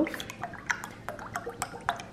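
A drink poured in a steady stream from a jug into a glass tumbler, gurgling and splashing as the glass fills, with many small irregular ticks.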